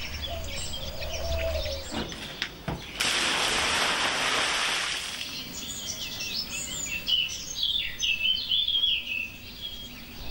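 Wild birds chirping and singing, in many short calls that grow busier in the second half. A loud, even rushing noise lasts about two seconds from about three seconds in.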